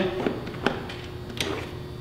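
A few light, separate clicks as the nut on a Honda engine's air filter cover is unscrewed by hand, over a low steady room background.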